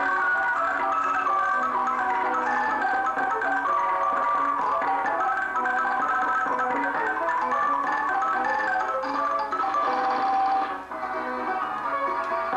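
Roll-played orchestrion playing a tune: piano with bright xylophone-like mallet notes over it, and a brief drop in level near the end.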